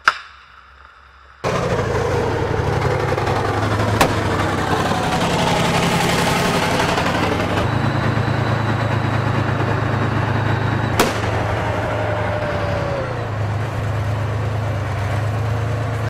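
A tank's diesel engine running loudly at close range, with a strong low hum. There is a sharp bang at the very start, and the engine cuts in about a second and a half later. Two single sharp cracks come over the engine, about four and eleven seconds in.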